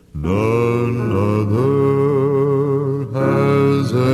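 Vocal music: voices singing long held notes with a slight vibrato, a new phrase beginning just after the start and another about three seconds in.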